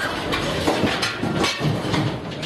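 A run of irregular knocks and clatter in a classroom, with chairs and desks moving as pupils get up, in the wake of a meteor's shock wave.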